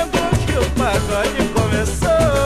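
Samba recording from a 1970s LP: a full band with a steady percussion beat under a bending melody line.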